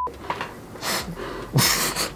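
Two loud breaths through a full-face snorkel mask, about a second in and again near the end, rushing and hissing through the mask.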